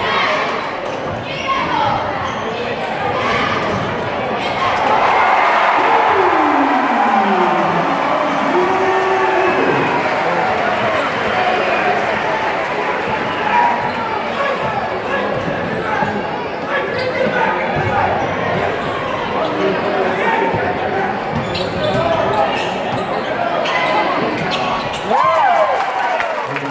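A basketball being dribbled on a hardwood gym floor during play, under the steady chatter and calls of a crowd, echoing in a large gymnasium.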